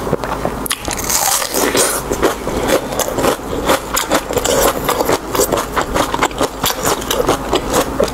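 Close-miked chewing of fatty, skin-on pork belly in chili oil: a continuous run of quick mouth clicks and smacks.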